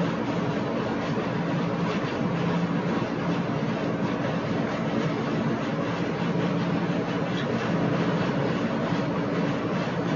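A steady mechanical hum, a low drone under an even hiss, holding level with no distinct strikes.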